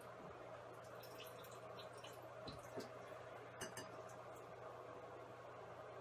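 Near silence: quiet room tone with a steady low hum and a few faint small clicks.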